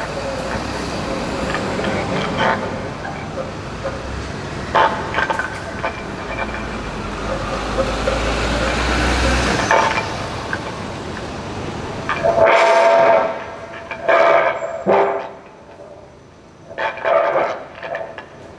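Free improvisation on violin, cello and guitars: a dense, noisy wash of sound with a low rumble that swells for about ten seconds and cuts off abruptly about twelve seconds in, then short, scratchy bowed and plucked phrases separated by pauses.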